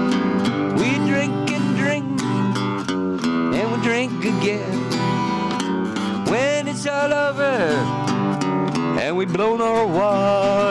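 Art & Lutherie acoustic guitar strummed in a country-style song. Long, wavering melody notes come in about six seconds in and again near the end.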